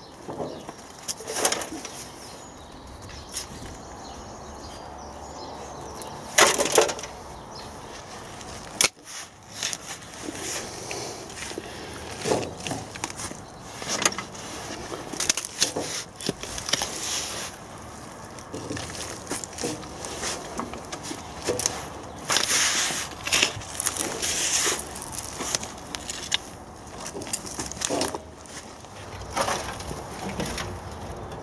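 A hand tool digging into and lifting well-rotted horse manure from a wooden compost bay: irregular scrapes, crunches and soft thuds, one stroke every second or two.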